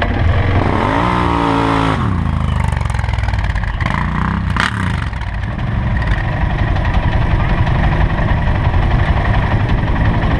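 Arctic Cat 700 ATV engine, close to the mic, revved up and back down once about a second in, then running steadily at a low throttle. There is a brief clatter a little before halfway.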